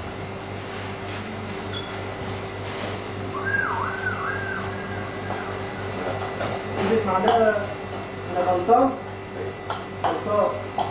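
A steady low hum throughout, with a wavering whistle about three to five seconds in, then indistinct voices in the last few seconds.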